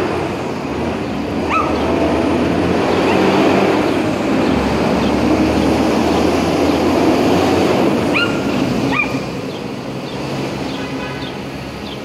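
Small dog giving a few short, high yaps: one about a second and a half in and two more around eight to nine seconds. Under them runs a steady wash of city street noise.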